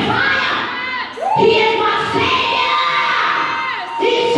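A woman singing a praise and worship song into a microphone in a large hall, with short phrases, then one long held high note from about a second in almost to the end, over audience shouts and cheers.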